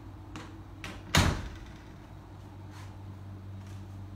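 A single loud, sharp knock about a second in, like a door shutting, after two lighter clicks, over a steady low hum.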